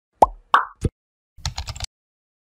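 Intro-animation sound effects: three quick plops, the first dropping in pitch, then a fast run of about eight keyboard-typing clicks.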